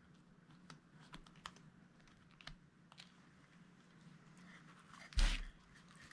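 Faint small clicks and rustles of paper clips and pins being worked onto a fish fin, with a louder knock-and-rustle of handling about five seconds in as the mounted fish is turned over.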